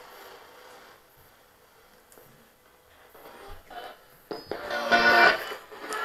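Handheld ghost box scanning through radio stations. A faint hiss and a pause give way, about three seconds in, to choppy, clipped fragments of broadcast music and voices, loudest just after four seconds.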